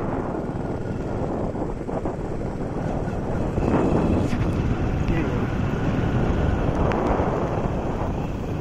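Steady wind buffeting the microphone over the rumble of a vehicle travelling along a paved road.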